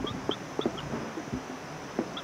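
A chicken clucking in short, irregular calls over a steady run of short high chirps, several a second.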